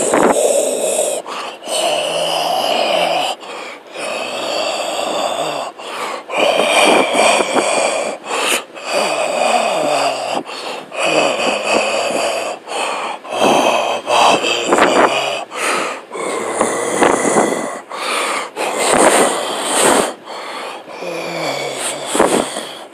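A person making loud, raspy, breathy vocal noises without words, in bursts of a second or two with short breaks between.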